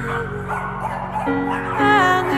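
Several Shih Tzus barking, heard under background music with slow held notes.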